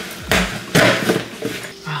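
Packaging rustling and crinkling in a few short bursts as a plastic tub is pulled out of a shipping package.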